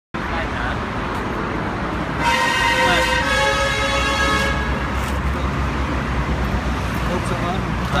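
Steady low hum and background noise of a workshop, with a held horn-like tone, steady in pitch and rich in overtones, lasting about two seconds from about two seconds in. Faint voices in the background.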